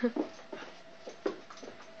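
Sighthound-type dog spinning after her tail on a carpeted floor: a string of short, irregular thumps and scuffles, about eight in two seconds, the loudest right at the start.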